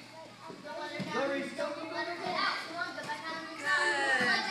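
Several children's voices chattering and calling out over one another, with no clear words.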